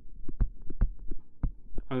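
Stylus writing on a tablet screen: a quick run of taps and short strokes, about six a second, as digits are written, over a faint steady low hum.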